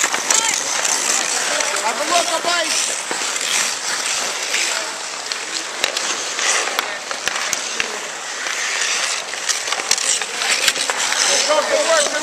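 Hockey skate blades scraping and carving on outdoor ice in surges, with a few sharp clacks of sticks and puck and scattered distant shouts from spectators.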